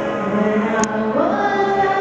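A woman singing karaoke into a microphone over a backing track, holding a note and then sliding up into a new held note a little after a second in. A short click sounds just before the slide.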